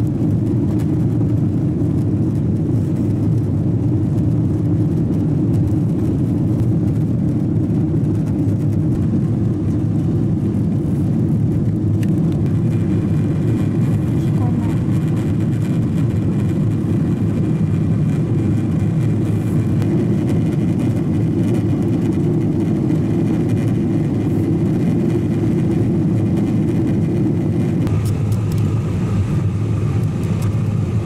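Steady, low jet airliner cabin noise, the engines and rushing air heard from inside the cabin during the climb after takeoff. A faint high tone joins about twelve seconds in, and the sound shifts slightly near the end.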